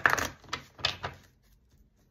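A deck of tarot cards shuffled by hand, with about three quick bursts of card clatter in the first second.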